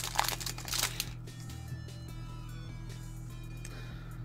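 Foil booster-pack wrapper crinkling as it is handled and torn open, in quick sharp crackles during the first second, then stopping; quiet background music runs underneath throughout.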